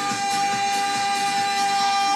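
Live pop song: a male singer holds one long steady note over band accompaniment.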